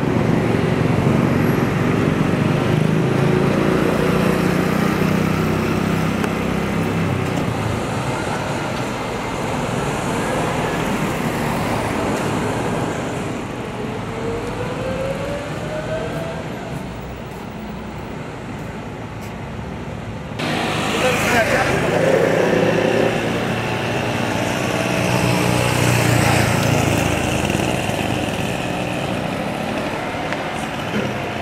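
Street ambience of road traffic running, with people talking in the background. The sound jumps abruptly louder and brighter about two-thirds of the way through.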